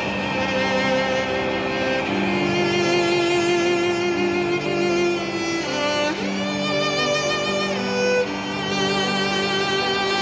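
Film score of bowed strings led by violin, playing slow sustained notes, with a rising slide about six seconds in.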